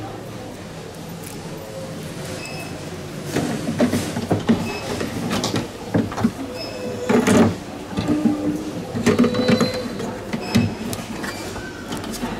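Irregular sharp plastic clicks and knocks, starting about three seconds in, as a Juwel aquarium pump is handled and pushed into its seat in the internal filter compartment.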